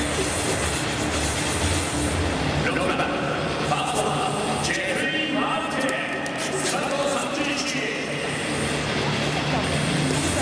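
Ballpark ambience: indistinct voices over a steady, dense din that never drops away.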